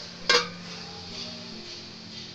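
A metal lid set down on an aluminium cooking pot, covering it with a single clank and a short ring about a third of a second in.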